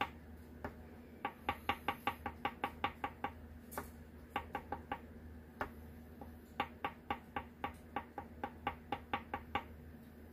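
Quick light taps of a fine paintbrush dotting paint onto glossy photo paper, in runs of about five or six taps a second with short pauses between runs.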